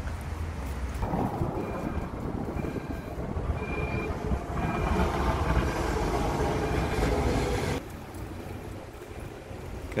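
City tram running over street rails, a dense rumble with a row of short high-pitched tones in its first half. The sound cuts off suddenly near the end.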